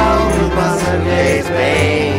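Folk-blues band music with several voices singing together over guitar and a steady bass line.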